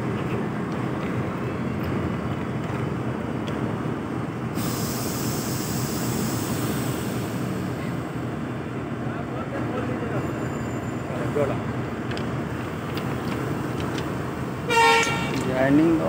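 Steady running noise of a stationary train beside a locomotive, with a rushing hiss from about five to eight seconds in and a brief horn toot near the end.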